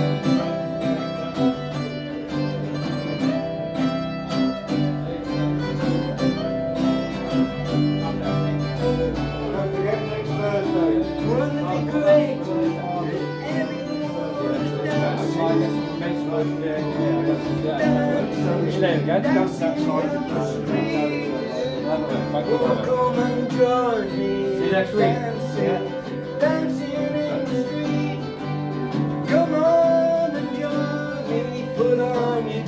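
Two acoustic guitars playing a song together, steady strummed chords through an instrumental stretch, with a voice singing again near the end.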